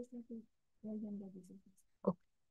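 Faint, halting speech: a voice murmuring two short phrases.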